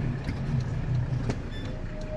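A vehicle's engine running, heard from inside the cabin as a steady low hum, with one sharp click a little past halfway.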